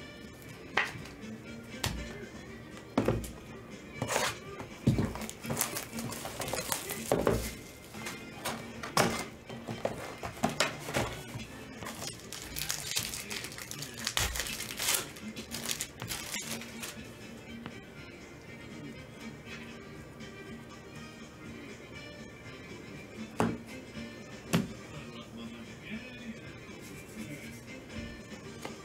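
Plastic wrapping being torn off a trading-card hobby box and foil packs crinkling as they are handled and ripped open. Sharp rustles and clicks come thick in the first half, then quieter handling, over background music.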